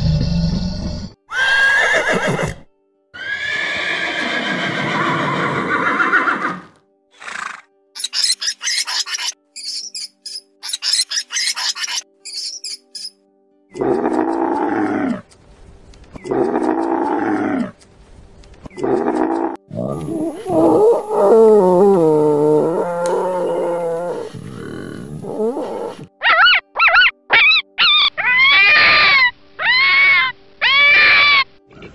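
Calls of several different animals, each clip cut short with brief pauses between them. Three pitched calls from a camel come about halfway through, and a quick run of short, high, repeated yips from a fennec fox comes near the end.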